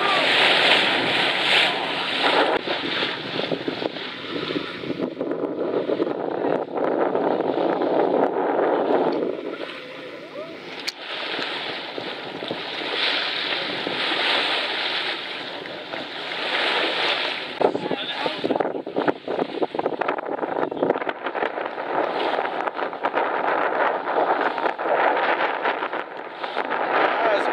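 Bow wave of a boat under way, water rushing and splashing along the hull, with wind buffeting the microphone; the rush swells and eases every few seconds.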